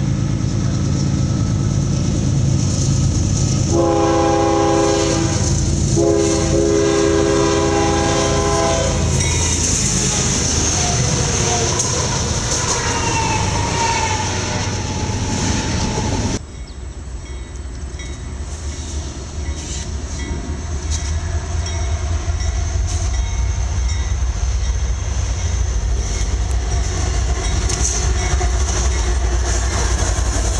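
An approaching train's diesel locomotive blows its multi-chime air horn in two long blasts over the low engine rumble. After a sudden cut, CSX diesel locomotives pass close by with a steady low rumble and faint wheel clicks over the rails.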